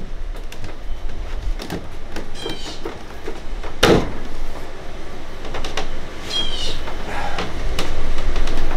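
Schedule 40 PVC vent pipe and elbow being twisted and pushed into place through a hole in a drywall board, rubbing and scraping, with short squeaks of plastic on plastic and a single knock about four seconds in.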